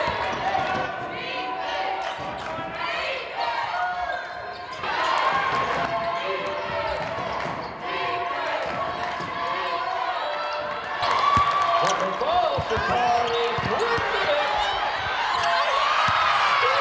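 Basketball being dribbled on a hardwood court, its bounces ringing in a large hall, over a continuous mix of players' and spectators' voices.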